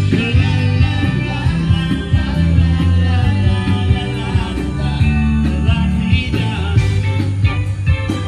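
A live band playing amplified rock-and-blues style music, with a heavy bass line, a steady drum beat and a voice singing over it.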